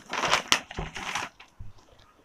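A white packing sheet crinkling as it is pulled out from between the folds of a silk saree, along with the silk rustling as it is spread. The rustling is loudest in the first second or so, with a sharp crackle about half a second in, then fades to a few faint rustles.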